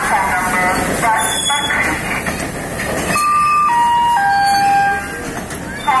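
Railway station public-address chime: three steady notes stepping down in pitch, about three seconds in, which introduces a platform train announcement. Underneath is the continuous rumble of a freight train rolling past.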